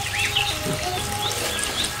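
Soft background music with held notes changing pitch every half second or so, with short high chirps scattered over it, mostly in the first second.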